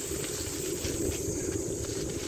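Riding noise from a bicycle on a concrete road: wind rumbling on the microphone with steady tyre noise, over a constant high-pitched insect buzz.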